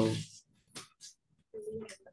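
Only speech over a video call: the end of a spoken "hello" at the start, a couple of short faint sounds, then another voice starting to speak near the end.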